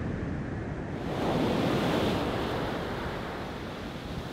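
A soft, rushing noise that swells about a second in and eases off toward the end.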